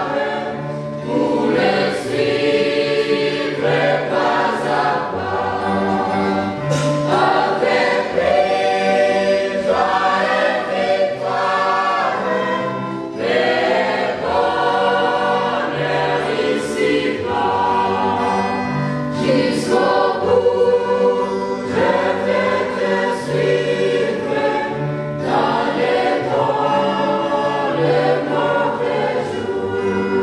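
Mixed choir of women and men singing a hymn in harmony, with held chords that change every second or two.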